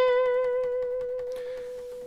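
Acoustic guitar sounding a single plucked twelfth-fret note held with vibrato, the pitch wavering slightly as it rings and slowly fades.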